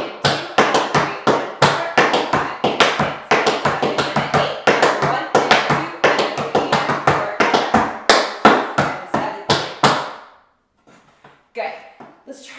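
Tap shoes striking a wooden tap board in a fast, continuous run of sharp clicks: riffs, heel drops and toe drops of a rhythm-turn combination. The tapping stops about ten seconds in.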